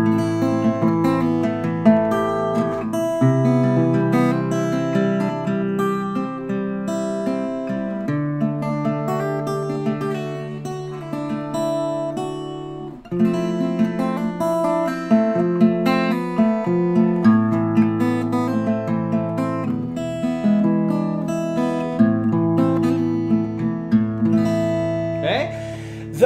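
Faith acoustic guitar played fingerstyle in free time: arpeggiated chords in A minor with open strings left ringing and small scale licks between them. Each chord is drawn out for a few seconds, with no steady rhythm, to build anticipation as an intro or outro would.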